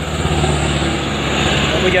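A Chiến Thắng light truck's engine running steadily with a low note as the truck, loaded with acacia logs, pulls along a muddy dirt track.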